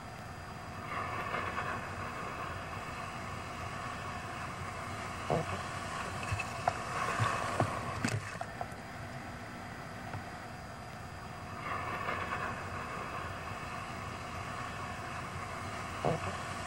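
Breaking surf and rushing whitewater picked up by a camera in the water, swelling louder about a second in, again in the middle and near the end, with a few sharp knocks or splashes against the camera in the middle.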